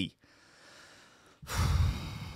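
A man's sigh: a loud breathy exhale close to the microphone, starting about one and a half seconds in, with a low rumble where the breath hits the mic.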